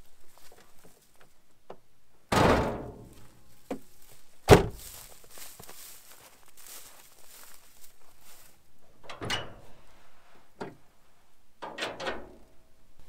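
Doors of a 2007 Land Rover Defender being shut: a thunk with a rattling tail about two seconds in, then a sharper, louder slam about two seconds later. Softer knocks follow near the end as the bonnet is opened.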